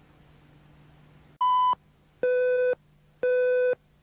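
Countdown beeps of a broadcast videotape leader. A faint hum is followed, about 1.5 s in, by a short higher beep, then two longer, lower beeps a second apart.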